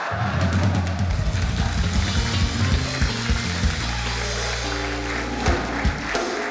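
Band music with a prominent bass line and drum kit, starting suddenly at the outset, with drum hits through the middle and held bass notes in the second half.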